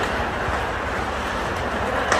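Ice hockey skate blades scraping and carving on rink ice, a steady hiss, over the general noise of the rink.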